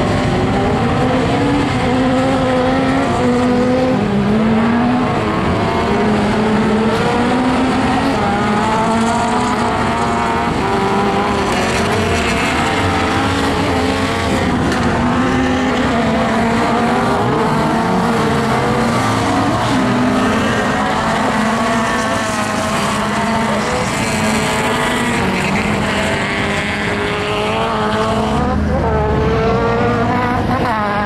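Engines of several autocross touring cars revving hard at once, their pitches overlapping and repeatedly rising and dropping with throttle and gear changes as the pack races past.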